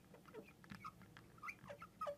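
Faint, short squeaks of a fluorescent marker dragged across a glass lightboard, one after another as letters are written.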